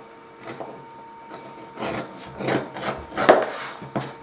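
Edge beveler shaving the edge of thick vegetable-tanned leather, a handful of short scraping strokes as each sliver is cut away.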